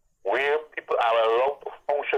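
Speech only: a voice talking, with a thin, telephone-like sound, starting about a quarter of a second in.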